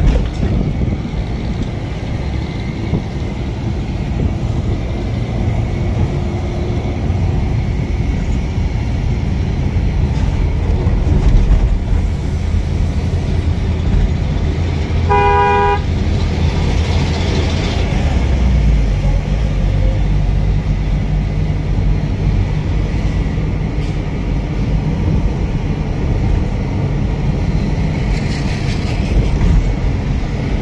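Steady engine and road rumble inside a moving ambulance's cabin, with one brief vehicle horn toot about halfway through. The low rumble grows heavier shortly after the horn.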